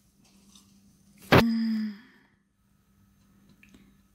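A sharp click about a second in, followed straight away by a short hummed vocal sound from a woman's voice lasting about half a second; otherwise near silence.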